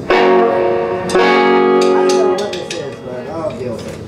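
Electric guitar chords struck and left ringing: one at the start, a second about a second later that rings for over a second and then dies away, with a few short sharp ticks in between.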